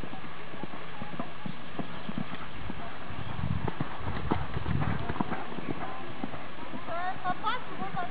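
A pony's hooves thudding on a sand arena at a canter, loudest about halfway through as it passes close by.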